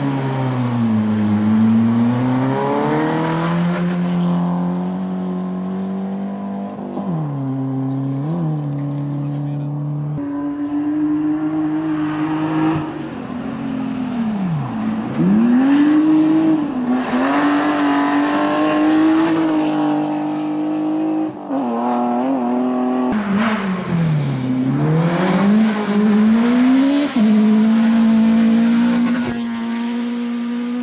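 Rally cars on a gravel stage, one after another, engines revving hard through corners. The pitch drops sharply as each car lifts or brakes, then climbs again under full acceleration.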